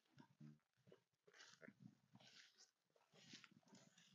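Near silence, with faint rustling of footsteps through tall grass a few times, about a second apart.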